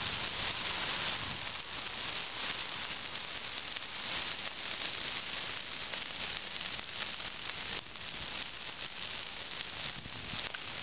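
Dry Christmas tree burning in full flame: a steady hiss with many small crackles, the needles flaring.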